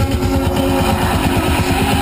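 Engine and road noise of a moving car or truck heard inside its cab, a fast, even low throb with a steady rush over it. Faint radio music runs underneath.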